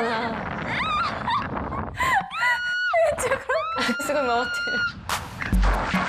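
A young woman screaming during a bungee-jump fall: a short rising cry about a second in, then two long, high held screams, the second well over a second long. A beat of music comes in near the end.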